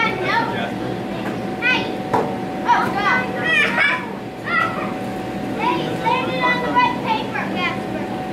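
Children's voices, high-pitched chatter and calls coming and going, over a steady hum.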